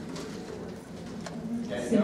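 Quiet, indistinct voices in an auditorium audience, with a short voiced sound near the end.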